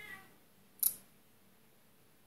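A cat meowing faintly at the start, then a single short, sharp click a little under a second in.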